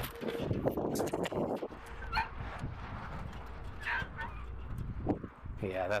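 Small dogs yipping and whimpering, two short yips about two and four seconds in. Plastic shrink wrap crinkles as it is handled in the first second or so.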